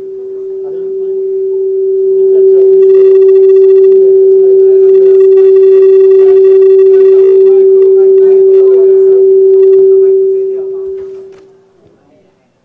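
Public-address microphone feedback: a single steady tone that swells over the first two or three seconds, holds very loud, and dies away shortly before the end.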